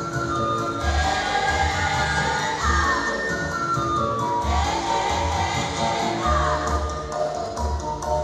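A women's choir singing together, with a regular low beat underneath.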